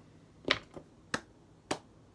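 Three finger snaps, evenly spaced a little over half a second apart.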